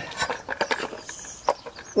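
Oil filter cartridge and housing cap being fitted by hand onto an Audi A3 8P's filter housing: a few light clicks and knocks as the cap is lined up and dropped in, the loudest about one and a half seconds in.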